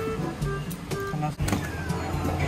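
Electronic game music from a claw machine, a simple melody of short, stepped beeping notes. A sharp click comes about one and a half seconds in.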